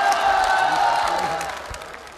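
Studio audience applauding and cheering, fading away about a second and a half in.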